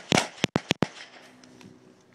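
A handgun fired in a rapid string, about five shots within the first second, then the firing stops.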